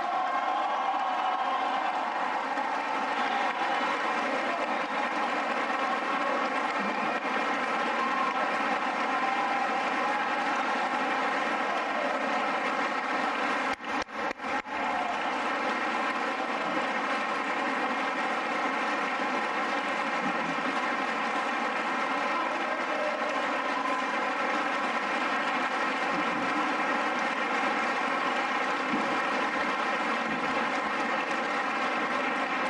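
A large indoor crowd applauding and cheering in a long, steady ovation after a political announcement. There are a few brief dips in the sound about halfway through.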